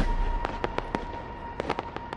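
Fireworks after a burst: scattered sharp crackling pops, about seven, growing fainter as the sound dies away over a faint steady tone.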